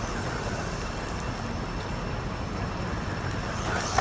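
RC car driving fast over loose gravel, its motor and tyres making a steady noise, with a sharp knock just before the end as it hits the ground.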